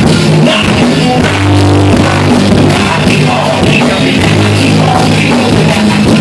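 Live rock band playing loud: bass guitar holding low notes over a drum kit, with a vocalist shouting into a microphone.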